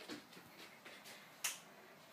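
Faint rustling with one sharp click about one and a half seconds in.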